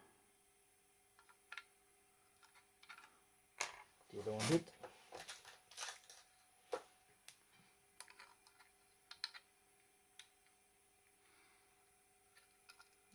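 Scattered light clicks and taps of a circuit board and a small metal push-button switch being handled, with a short voiced sound from the person about four seconds in.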